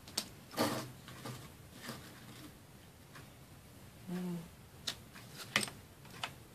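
A few light clicks and taps from craft materials and small tools being handled on a tabletop. About four seconds in there is a brief low hum-like voice sound.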